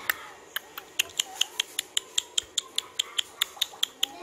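A small dog's claws clicking on the floor as it walks, a quick even run of about five clicks a second.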